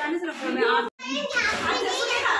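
Speech only: women and a girl talking, broken by a sudden brief dropout to silence about a second in.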